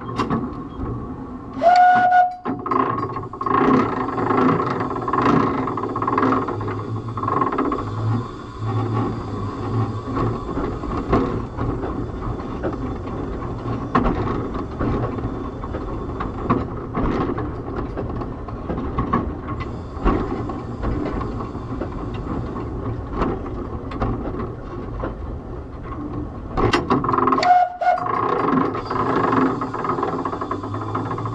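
Narrow-gauge steam locomotive Palmerston running, heard from the footplate, with two short whistle blasts: one about two seconds in and one near the end.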